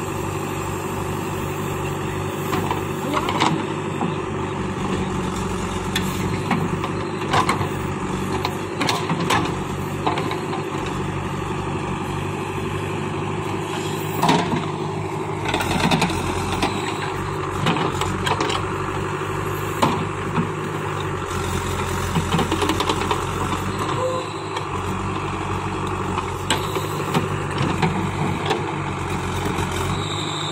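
JCB 3DX backhoe loader's diesel engine running steadily while the backhoe works, with scattered knocks and scrapes as the bucket digs through stony soil.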